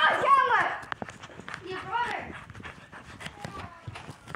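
Quick footsteps and knocks from a hand-held phone being carried at a run, with two short high-pitched vocal cries that fall in pitch, one at the start and one about two seconds in.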